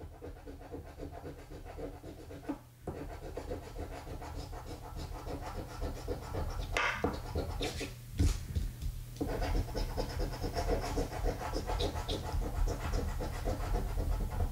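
Scratch-off lottery ticket being scratched with a round metal-rimmed scratcher token, a rapid run of rubbing strokes on the latex coating with brief pauses about three and eight seconds in.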